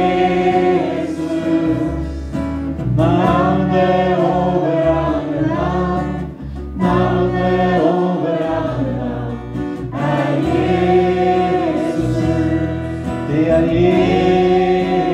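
Live worship band: several voices singing a Norwegian worship song together over electric bass and electric guitar, in sung phrases with a short break about six and a half seconds in.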